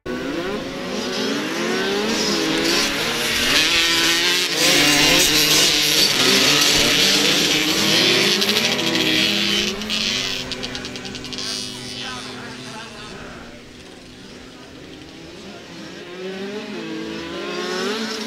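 A pack of small 65 cc two-stroke youth motocross bikes revving hard off the start and racing, many engine notes rising and falling over one another. Loudest through the first half, easing off after about twelve seconds and building again near the end as the bikes come round.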